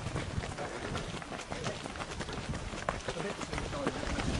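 Footsteps on rocky ground with irregular knocks and scuffs from the handheld camera as it is carried along. Indistinct voices sound faintly in the background.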